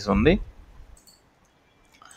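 A man's voice trails off at the start, followed by a few faint clicks from a computer mouse scroll wheel as the page scrolls, then near silence.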